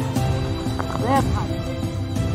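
Background music with sustained held notes, and short rising-and-falling vocal calls just after a second in.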